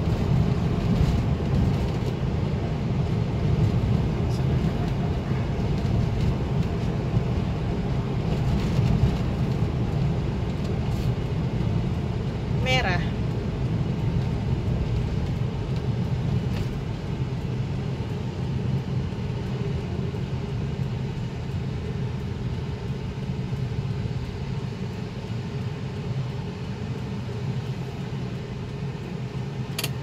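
Steady low rumble of a moving car's engine and tyres, heard from inside the cabin. A short pitched sound cuts in briefly about halfway through.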